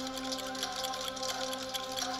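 Many clocks ticking together in a rapid, overlapping patter over a held music chord, from a film trailer's soundtrack.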